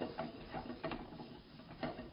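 Stuffed okra and sliced onions sauteing in oil in a non-stick pan, giving faint, irregular crackles and ticks.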